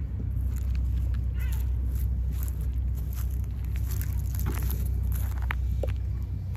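Cat crunching dry kibble from a plastic tub: quick irregular clicks of chewing, over a steady low background rumble. A short meow comes about a second and a half in.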